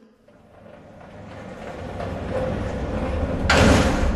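Radio-play transition effect: a rushing noise that swells steadily louder for about three seconds and ends in a short, loud hissing burst near the end, over a low drone that builds beneath it.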